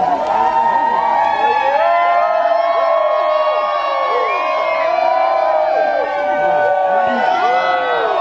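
A crowd cheering, with many voices shouting and calling out at once.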